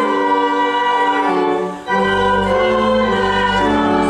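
Church choir singing with organ accompaniment, held chords that break off briefly near the middle before the next phrase starts over a deep bass note.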